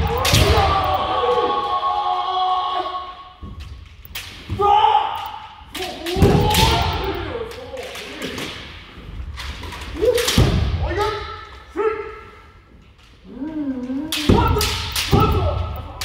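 Kendo practice: drawn-out kiai shouts, each held a second or more, with sharp cracks of bamboo shinai strikes and stamping footwork on the wooden dojo floor. Several pairs spar at once, so the shouts and hits overlap and echo in the large hall.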